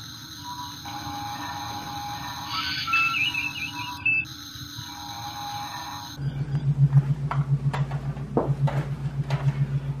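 Electronic starship-ambience sound effects: steady beeping tones with a warbling chirp. About six seconds in, these give way to a low, rapidly pulsing hum with faint clicks.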